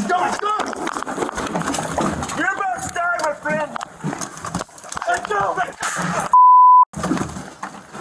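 Body-camera audio of a struggle at close range: raised voices talking over each other, with clothing rustle and knocks, then a steady bleep about six seconds in that blanks out a word.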